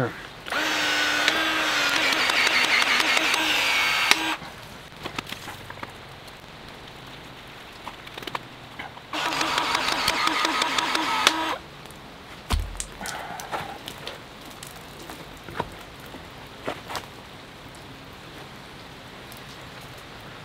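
Powered PEX expansion tool running twice, a motor whine of about four seconds and then about two seconds, as it expands the end of a one-inch PEX pipe inside an expansion ring. Scattered light clicks and a single low thump follow.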